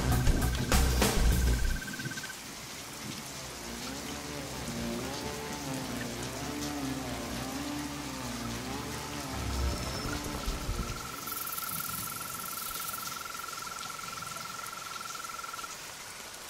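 Heavy rain falling steadily under a dark film score. A loud low musical swell fades out about two seconds in, followed by a quieter wavering tone and then a thin held high note over the rain.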